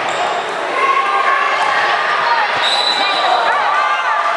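Gym crowd noise at a youth basketball game: spectators talking and calling out in a large echoing hall, with a basketball bouncing on the hardwood court. About two-thirds of the way through comes one short, high referee's whistle.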